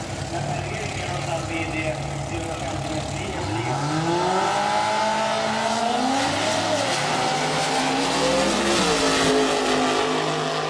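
Dragster engines idling at the start line, then launching about three and a half seconds in and accelerating down the strip, their pitch climbing with two sharp drops along the way.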